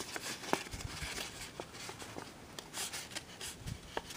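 Printer paper being creased by hand into a box-pleated origami grid: soft rustling with scattered small crisp clicks as fingers pinch a pleat flat.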